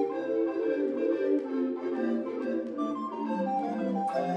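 Recorder orchestra playing a lively passage of short repeated notes in several interlocking parts, from a mid-range melody down to low bass recorders. A higher line steps down in pitch near the end.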